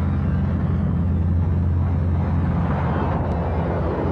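Aircraft engines droning steadily at a low pitch.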